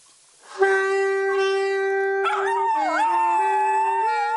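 Alto saxophone holding a long note, then stepping down through a few lower notes. About two seconds in, a dog joins with a high, wavering howl that slides up and down, singing along to the saxophone.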